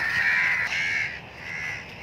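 A bird calling with a hoarse, rasping sound for about a second, then fading.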